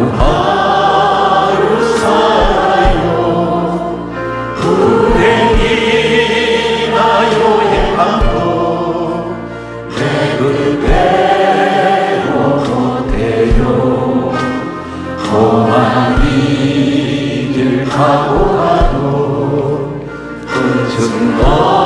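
A mixed group of worship singers, men and women, singing a Korean gospel song together over live band accompaniment with a steady beat.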